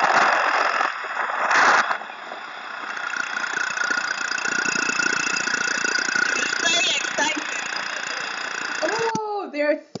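Motorcycle engine running as the bike rides along, under steady rushing wind noise on the microphone. A woman starts speaking near the end.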